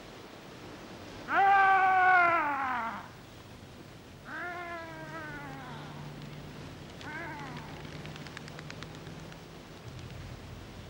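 A man's long, falling shout, given three times and fainter each time, as a bird-scaring cry across a field. A quick run of faint clicks follows near the end.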